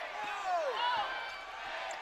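Basketball dribbled on a hardwood court, with a few faint short squeaks and low arena crowd noise behind it.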